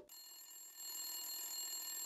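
A faint, steady electronic ringing made of several fixed high tones. It grows louder about half a second in and stops near the end.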